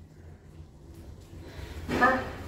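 A low, steady hum inside a moving passenger elevator cab.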